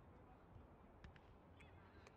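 Near silence: a low outdoor rumble, with a few faint distant calls and clicks about a second and a half in.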